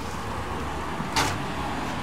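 Steady low background rumble and hiss, with a short burst of hiss a little over a second in.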